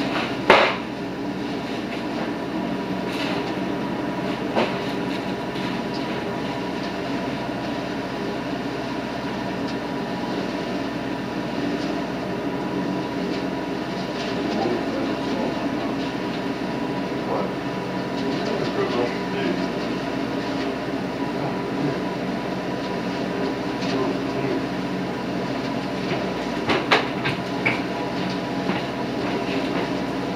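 A Tarrant leaf vacuum unit runs steadily with an engine-and-fan drone while its hose sucks up and shreds a pile of leaves. A few sharp knocks break through, the loudest about half a second in and a cluster near the end.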